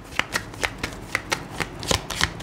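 A tarot deck being shuffled by hand: a quick, even run of light card slaps and clicks, about five or six a second.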